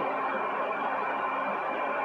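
Steady background hiss of room tone and recording noise, with a faint steady high-pitched tone in it.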